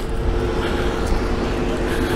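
Steady engine hum with a low rumble underneath.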